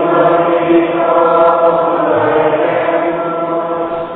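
Choir singing in a chant-like style, the voices holding long sustained notes together, then fading near the end.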